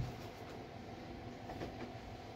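Synthetic sportswear fabric rustling as bib trousers are smoothed flat and let go on a table, with a soft knock at the start, over a low room hum.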